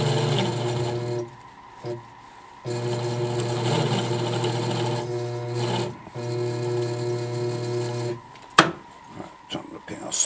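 920B toroid winder's motor running with a steady hum in spurts as the shuttle is jogged. It runs about a second, stops, then runs about five seconds with a brief break and stops about eight seconds in. A sharp knock and a few light clicks follow.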